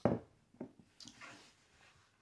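A beer glass set down on a wooden table with a light knock, followed by faint mouth sounds as a sip of beer is tasted.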